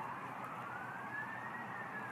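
Distant siren wailing: a single tone rising slowly, peaking about a second and a half in, then starting to fall, over a steady background hiss.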